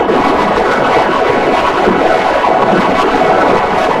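Loud, harsh wall of heavily distorted, pitch-shifted audio from an effects-edited logo, starting abruptly and holding steady with no clear tune.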